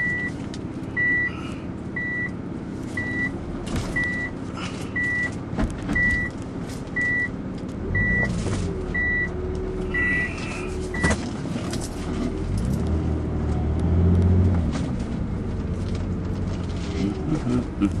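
Cabin sound of a 2001 Nissan Elgrand Rider's 3.5-litre V6 minivan pulling away: a high electronic warning beep sounds about once a second, around a dozen times, and stops about eleven seconds in. Under it the engine and road noise stay quiet, swelling a little in the middle as the van gathers speed.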